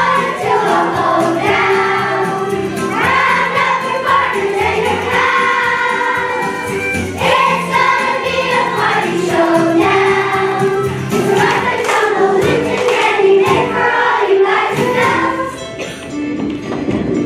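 A choir of young children singing a song in unison over instrumental accompaniment, in held phrases with short breaks between them.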